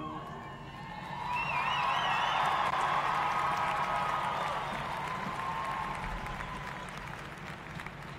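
A marching band's held final chord cuts off at the start, and the arena audience applauds and cheers, with a warbling high whoop over the clapping; the applause swells for a couple of seconds and then dies away.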